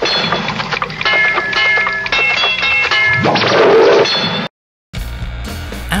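Musique concrète tape-loop collage: spliced tape sounds played backwards, forwards and at the wrong speed, with held bell-like ringing tones and a swooping smear that comes round about every four seconds. Near the end it cuts off to a brief silence, and different music with a heavy bass starts.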